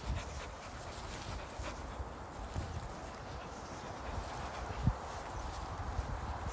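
Dogs moving about close by on grass, with no clear barking, and a few short low thumps, one near the start, one a little before the middle and one near the end.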